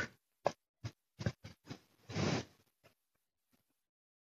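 Handling noise: a few soft clicks and taps, then a short rustle a little after two seconds.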